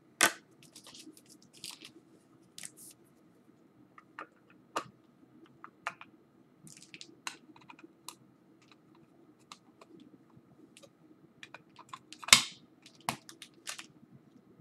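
Trading cards and plastic card holders being handled: scattered light clicks and short rustles, with a sharp click just after the start and a longer rustle then a click near the end, as a card is slipped into a rigid top loader.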